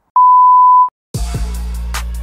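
A single steady high-pitched censor bleep lasting under a second, then a short silence, then music with a deep, falling bass drum beat starts about a second in.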